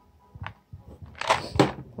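A light click, then a brief rustle a little over a second in: a plastic supplement bottle being handled and set down in a cardboard box.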